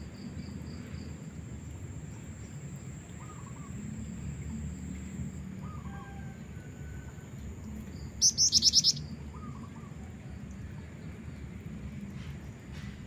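Black-winged flycatcher-shrike (jingjing batu) giving one short, rapid, high-pitched trill of about six notes a little past two-thirds of the way through. Faint, lower short bird notes come and go in the background.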